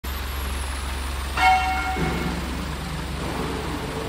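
Haituo 550T plastic injection moulding machine running: a steady low hum, then about a third of the way in a sudden loud ringing note lasting about half a second, after which the machine's running note shifts to a higher steady drone.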